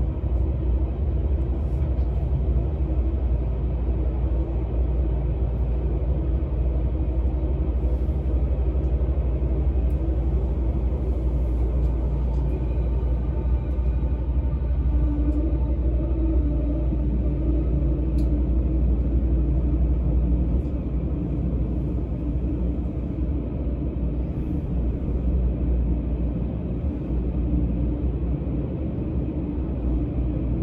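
An Odakyu 60000-series MSE Romancecar electric train heard from inside the passenger cabin as it runs through a subway tunnel: a steady low rumble of wheels and running gear. Around the middle a faint motor whine rises in pitch, and the noise eases a little about two-thirds through.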